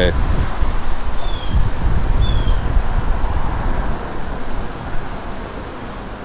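Wind buffeting the microphone over a steady rush of highway traffic. Two short, high, falling chirps come about one and two seconds in.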